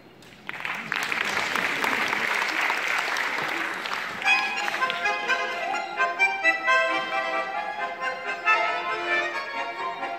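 Audience applause for about three and a half seconds, then two accordions start playing the introduction to a Russian folk song with a steady beat.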